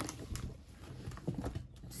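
A few light, irregular clicks and taps as a ring binder is opened and its clear plastic cash pouches are handled on a tabletop.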